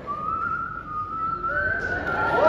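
A person whistling: a few clear, held notes on one thin tone that steps up a little in pitch about one and a half seconds in.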